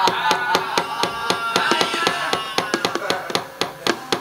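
Javanese gamelan playing: quick, even knocking strokes, several a second, under a held melodic line that slowly falls in pitch.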